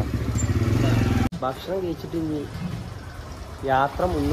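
A motor vehicle engine running close by in a busy street, with people's voices over it. The sound cuts off abruptly about a second in, then street hum and short snatches of talk carry on.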